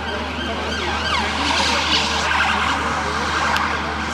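Emergency vehicle siren in the street, with a falling sweep about a second in, then a wavering wail for a couple of seconds.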